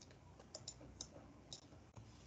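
Near silence: room tone with a few faint, short clicks spread over two seconds.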